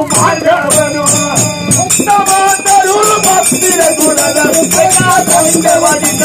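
Male voices singing a Kannada dollina pada folk devotional song, with small hand cymbals struck in a fast, steady rhythm throughout.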